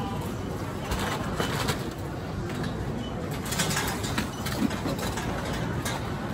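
Busy shop checkout ambience: a steady background hum and hubbub with light clatter and rustling of goods being handled at the counter, and a few short faint high beeps.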